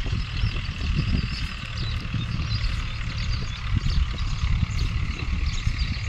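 Wind buffeting the microphone: an uneven low rumble over a steady high hiss.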